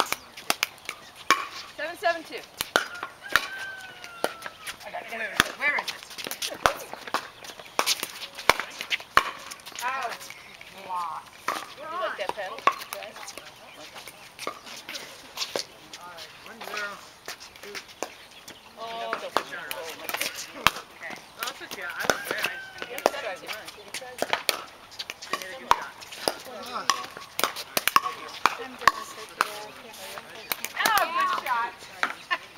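Pickleball paddles striking a hard plastic ball: sharp, irregular pops, at times several in a second, with voices chattering underneath.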